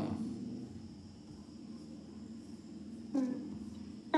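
A steady low hum, with a short voice sound about three seconds in.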